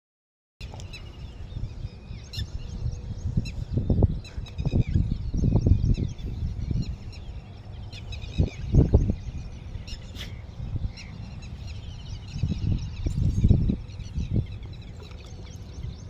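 Birds chirping and calling throughout, with several louder low rumbles about four to six seconds in, near nine seconds and again around thirteen seconds.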